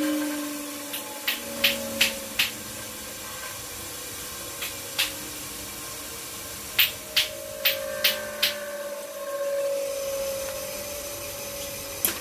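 A small electric motor whirring steadily with a faint hum, and sharp clicks or taps: four in the first few seconds, one on its own, then five in quick succession past the middle.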